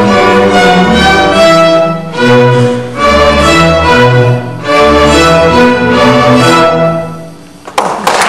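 School string orchestra playing a piece with violins over cellos and basses in sustained notes; the last chord fades about seven and a half seconds in. Applause breaks out right at the end.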